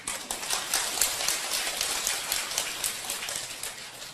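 Audience applauding: a dense patter of many hands clapping that starts suddenly and dies away near the end.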